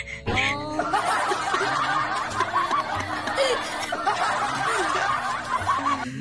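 Google Assistant's recorded crying sound playing from a smartphone speaker, a continuous stretch of sobbing that stops abruptly at the end, mixed with laughter.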